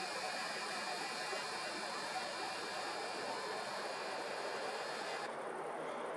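Faint, steady background hiss of outdoor night ambience with no distinct events. The higher part of the hiss drops away about five seconds in.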